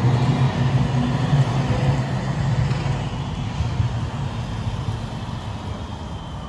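A tram passing close by, its low motor hum and running noise loudest at first and slowly fading as it moves on, over general street traffic.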